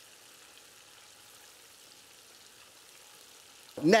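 Faint, steady simmering sizzle of meatballs braising in broth in a pan on the stove.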